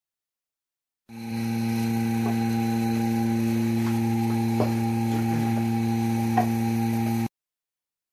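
A small electric machine running with a steady, even hum, with a few light clicks over it. The sound starts about a second in and cuts off suddenly a little after seven seconds.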